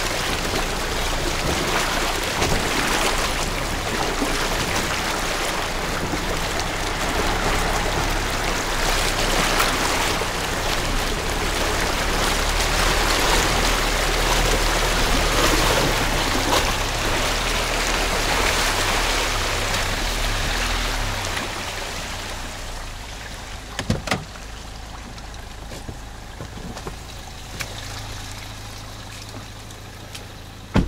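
Toyota RAV4 driving through puddles and mud on a flooded track, its engine a low hum under a steady rush and splash of water against the body. The noise falls away about two-thirds of the way through, leaving a couple of sharp knocks.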